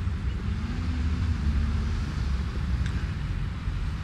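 A steady low rumble, fluctuating like wind buffeting an outdoor microphone, with a faint click about three seconds in.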